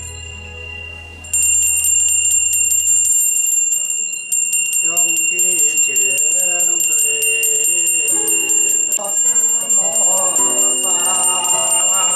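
A small hand bell rung rapidly and continuously from about a second in, a steady high ringing with a fast rattle of clapper strikes. From about five seconds in a man's chanting voice rises and falls over the bell, while low music fades out in the first few seconds.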